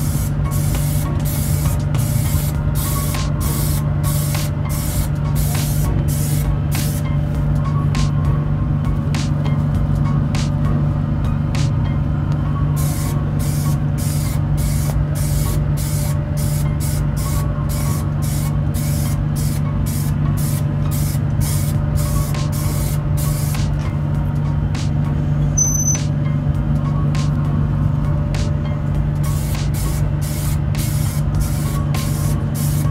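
Aerosol spray paint can spraying in many short hissing bursts, about two a second, over a steady low hum from the spray booth's extraction fan.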